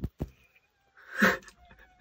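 Two quick sharp slaps or claps of hands swatting at insects, then about a second in a short, loud cry.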